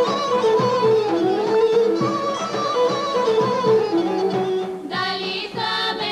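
Bulgarian folk orchestra with bagpipe, large drum and plucked lute playing an instrumental melody. About five seconds in, a small group of women's voices comes in singing.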